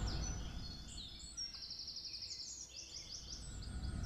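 Faint outdoor ambience with a bird singing: a quick run of high chirping notes in the middle, over a low background hush that fades away.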